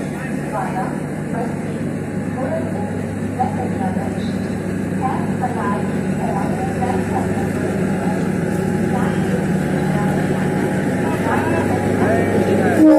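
Diesel engine of a DEMU train's power car running with a steady low drone, slowly getting louder as the train moves past, with people's voices over it.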